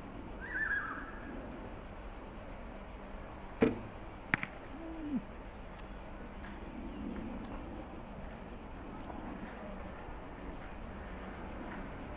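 A single bow shot: the string is released with a sharp snap about three and a half seconds in, and under a second later the arrow strikes a straw target boss with a short knock. Earlier there is a brief falling chirp.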